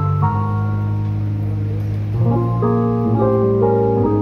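Live rock band playing an instrumental passage: held electric keyboard chords over bass and electric guitar, with no singing. About two seconds in, more notes come in and the chords move higher and fuller.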